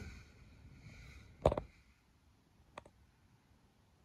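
Handling clicks and knocks: one sharp knock about a second and a half in, then two faint clicks just under three seconds in.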